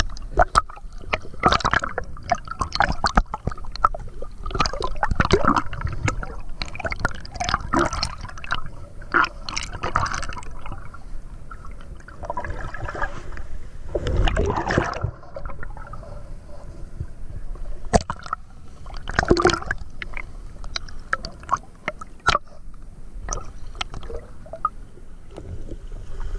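Seawater sloshing, splashing and gurgling around a waterproof action camera held at the waterline as it dips in and out of small waves. There is a louder splash about fourteen seconds in.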